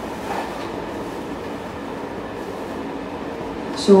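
A steady mechanical hum with several held tones over a low noise, unchanging throughout.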